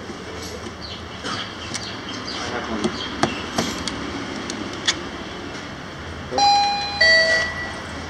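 A few light clicks from handling around a coin slot, then near the end a two-note electronic chime, a higher tone followed by a lower one, each about half a second long, over steady shop background noise.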